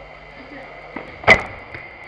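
A football struck hard on an indoor five-a-side pitch: a small click about a second in, then one loud thwack of the ball being hit or striking something, with a short echo.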